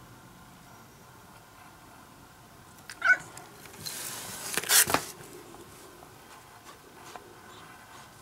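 A domestic cat gives one short meow about three seconds in. About a second of loud rustling noise follows.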